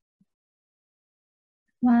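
Near silence, then a woman's voice begins speaking slowly near the end.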